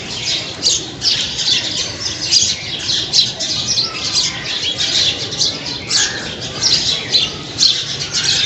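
A flock of many birds calling at once: a dense, continuous chatter of short, high chirps and squawks overlapping without pause.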